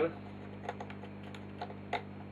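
A few light clicks, the sharpest near the end, as mains power is switched on to a small hand-wound transformer loaded with a 40 W incandescent bulb; a low, steady mains hum runs underneath.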